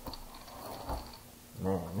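Faint clicks and light rattling of an RC buggy's plastic chassis and wing being handled.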